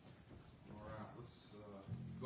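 A faint, drawn-out voice, twice: once about a second in and again, louder, at the end.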